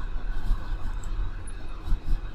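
Steady low background rumble with an even hiss, and no speech.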